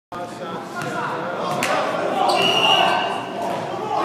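Basketball bouncing on a hardwood gym floor, a few sharp smacks echoing in a large hall, over players' voices. A high steady tone rings for under a second about halfway through.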